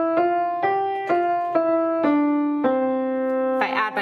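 Schultz upright piano playing a C major five-note scale one note at a time, about two notes a second: it reaches the top note G just under a second in, steps back down through F, E and D, and lands on middle C, which rings for about a second before a voice comes in near the end.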